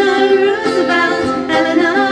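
Two women's voices singing a folk song live over acoustic guitar, with long notes that glide between pitches.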